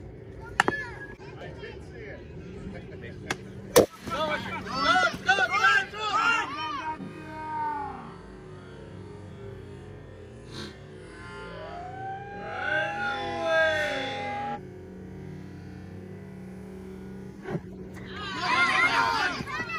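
A baseball bat strikes the ball with one sharp crack about four seconds in, the loudest sound here. Young players and spectators shout right after it, and again later with one long drawn-out call. A lighter knock comes shortly after the start.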